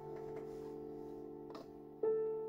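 Digital piano in D minor: a held chord slowly fading, with a few soft notes played quietly over it.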